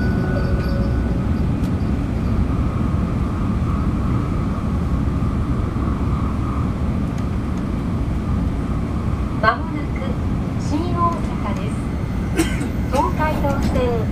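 Steady low running rumble inside the cabin of an N700-series Tokaido Shinkansen travelling at speed. The tail of an onboard chime fades in the first second, and a train PA announcement voice starts over the rumble about ten seconds in.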